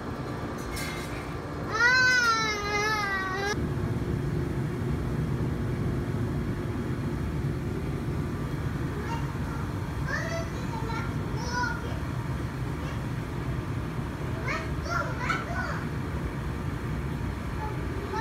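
Young children's voices: a loud, high, wavering squeal about two seconds in, then a few short high calls and babble later on, over a steady low rumble.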